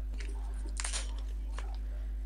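Plastic foam wrapping around a digital photo frame rustling and crinkling as it is handled, with one louder crinkle a little before the middle. A steady low electrical hum runs underneath.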